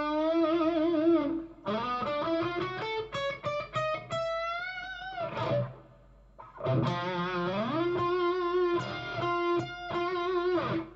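Telecaster-style electric guitar playing a lead solo slowly, in first-position B minor pentatonic: single sustained notes with vibrato and string bends, and a quick run of notes about three seconds in. After a brief pause in the middle, a note bends up slowly and is held.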